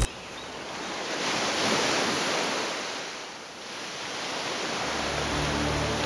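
Ocean surf washing on a beach, a steady rush that swells to a peak about two seconds in, eases off, then builds again.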